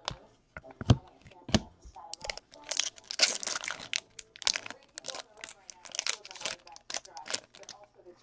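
Plastic wrapper of a hockey card pack being torn open and crinkled by hand: irregular sharp crackles, with a denser stretch of crinkling about three seconds in.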